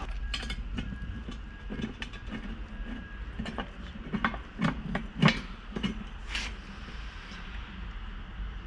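Irregular clicks and light knocks of a hand tool and metal parts being worked at the throttle body of a Holley intake manifold on an LS V8 engine, over a steady low hum. The sharpest knock comes about five seconds in.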